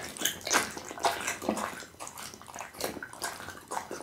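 Pit bull chewing a mouthful of raw meat close to the microphone: wet, squelching smacks and clicks of jaws and tongue. They come thick in the first two seconds, then quieter and sparser.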